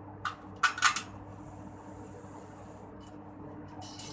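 Metal clinking and clicking from a steel folding-wheelchair frame being handled: a cluster of sharp clicks in the first second and another near the end, over a steady low hum.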